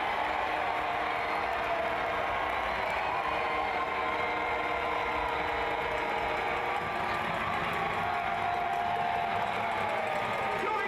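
Crowd noise in an indoor arena: a steady, dense din of many voices.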